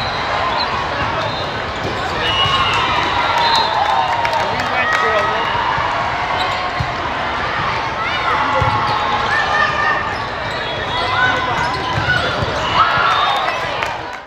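Indoor volleyball play in a large hall: a steady wash of players' calls and crowd voices, with scattered sharp thumps of the ball being passed and hit and short squeaks of sneakers on the court.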